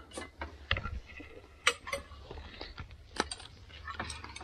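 Fork on a plate: a few faint, scattered clicks and scrapes of cutlery.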